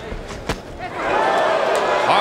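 A single sharp thud about half a second in, a boxing glove landing during close-range exchanges, over low arena crowd noise. A man's voice starts loudly from about a second in.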